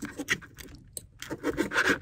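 Red-handled knife sawing through a pizza crust on a cutting board, with a fork holding the slice: a run of short rasping strokes.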